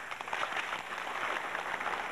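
Crowd applauding: many hands clapping at once in a dense, steady patter.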